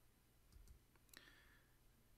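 Near silence, with a few faint computer mouse clicks as Skype is closed.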